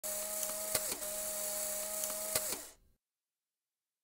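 Logo sound effect: a steady mechanical whir with a held humming tone and a few sharp clicks, the tone dipping in pitch near two of the clicks, cutting off about two and a half seconds in.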